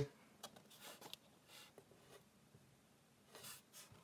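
Near silence with faint rustles and a few light clicks: a cardboard CD digipak being unfolded and handled.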